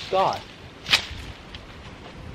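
Manual hedge shears snapping shut once on a shrub's branches, a sharp snip of the metal blades about a second in.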